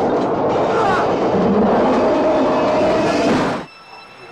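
Loud film soundtrack of a monster attack on an elevated train: a dense din of train noise with voices mixed in. It cuts off abruptly about three and a half seconds in.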